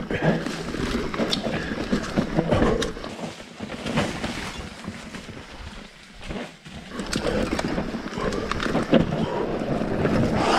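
Mountain bike descending a forest dirt trail: tyre noise over dirt and leaf litter with scattered knocks and rattles from the bike over bumps, and the rider's short wordless vocal sounds now and then.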